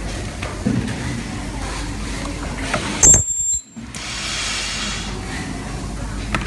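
Pneumatic leak-testing press working: a steady machine hum, a brief loud high-pitched squeal about halfway through that cuts off suddenly, then a soft hiss of compressed air as the press head comes down onto the test fixture.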